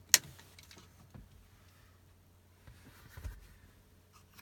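Plastic phone vent mount being handled: a sharp click near the start, then a few faint clicks and a soft low bump about three seconds in as its adjustable bottom legs are moved by hand.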